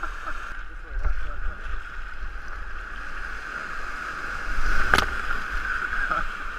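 Whitewater of a river rapid rushing around an inflatable kayak, a steady hiss with low rumbling bumps underneath, and one sharp knock about five seconds in.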